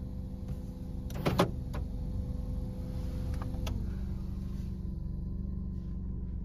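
Car cabin with the engine running, a steady low hum. A short cluster of clicks and knocks about a second in is the loudest sound, with a few single clicks later.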